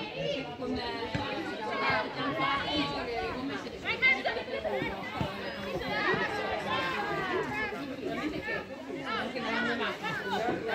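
Several voices talking over one another in continuous overlapping chatter, with a short, louder peak about four seconds in.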